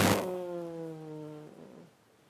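A person's voice holding one drawn-out, wordless note for about a second and a half, slowly falling in pitch, after a short loud rush of noise at the very start.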